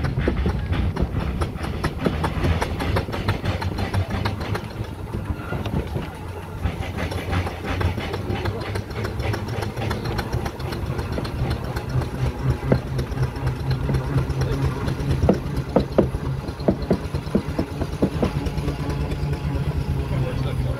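Foden steam wagon under way: a fast, continuous run of exhaust beats and mechanical clatter over a low rumble. A steady low hum joins about twelve seconds in.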